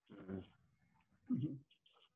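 Quiet, brief speech: a name spoken softly, then a short 'mm-hmm' murmur about a second and a half in.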